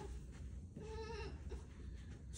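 A girl's short, wavering, bleat-like cry of effort about a second in, as she strains to get up from the seat.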